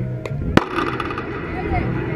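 A single sharp crack about half a second in, as the pitched softball reaches the plate, over players' and spectators' voices and chanting.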